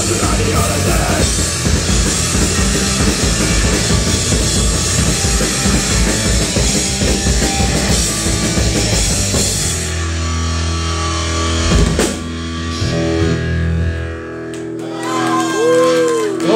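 Punk rock band playing live, with electric guitars, bass and drum kit. About ten seconds in the song ends on a held chord that rings on, with a single sharp hit near its end, and the sound drops to a quieter stretch.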